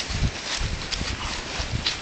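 Footsteps on grass: a few irregular low thuds with short swishing sounds.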